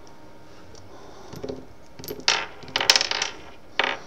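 Brass .22 Magnum cartridges ejected from a Charter Arms Pathfinder revolver's cylinder, clinking and clattering onto a desk. A single light click comes first, then a quick cluster of metallic clinks about two seconds in, and a last clink near the end.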